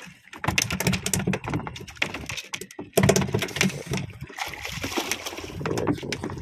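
Irregular knocks and clatter in a small boat as a caught tuna and fishing line are handled on the deck, with water splashing against the hull. The loudest knocks come about halfway through.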